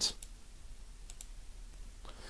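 A pair of faint clicks about a second in, over quiet room tone. They are the clicks of the computer advancing the slideshow to its next line of text.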